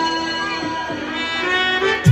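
Stage band playing an instrumental passage of a Hindi song: held chords with a melody line over them and no drum beat.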